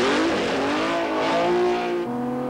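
Racing car engine accelerating hard, its note climbing steadily over a loud rush of exhaust noise.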